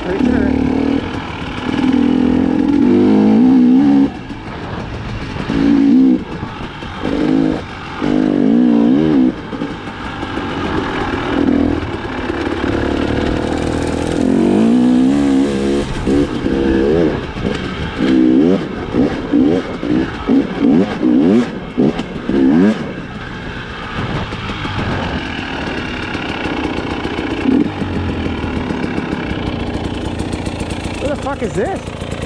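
2019 KTM 300 XC-W TPI two-stroke dirt bike engine being ridden on a trail, revving in repeated throttle bursts with its pitch rising and falling, including a run of quick throttle blips. It settles to a lower, steadier run near the end.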